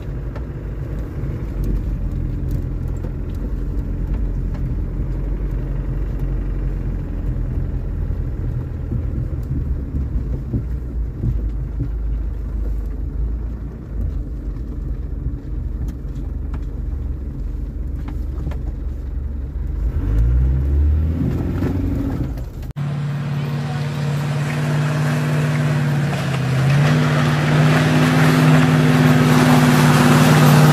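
Land Rover engine and drivetrain heard from inside the cabin, crawling in low-range gearing over soft marsh ground: a low steady rumble, with the revs rising briefly about two-thirds of the way through. The sound then cuts abruptly to a different recording of an off-road vehicle's engine, with a steadier, higher note and more hiss, which steps up in pitch near the end.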